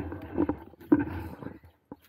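Two sharp knocks about half a second apart over a low rumble, then a brief click near the end.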